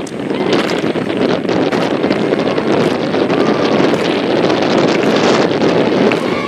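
A large crowd of students marching through a waterlogged field: a loud, steady wash of many voices and splashing footsteps, with wind buffeting the microphone.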